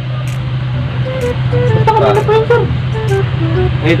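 A steady low engine hum runs throughout. From about a second in, a short melody of held notes stepping up and down plays over it.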